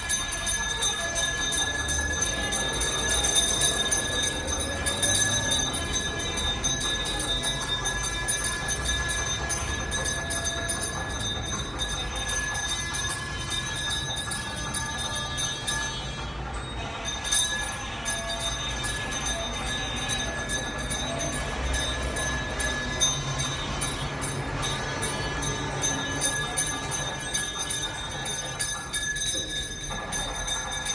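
Temple bells ringing non-stop in a fast, even metallic clatter, with a brief break about halfway through.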